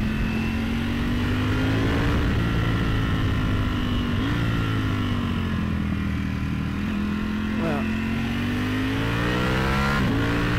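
Ducati Panigale V4S's 1103 cc V4 engine running under load. Its note falls about midway, then climbs steadily over the last few seconds as the bike accelerates.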